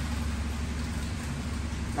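Car engine idling: a steady low hum with a faint even hiss over it.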